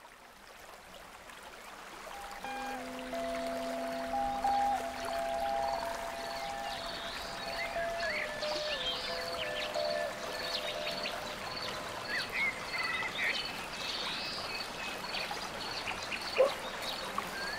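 Running stream fading in, joined about two and a half seconds in by slow music of long held notes, with scattered high bird-like chirps over the water.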